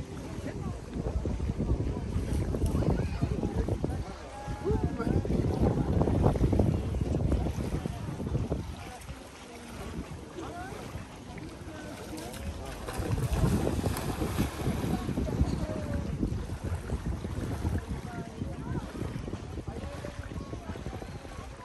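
Wind buffeting the microphone in gusts, swelling about a second in and again around twelve seconds in, over small waves lapping on the lake shore.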